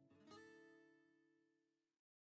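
Faint acoustic guitar background music: a chord strummed just after the start, ringing and fading out.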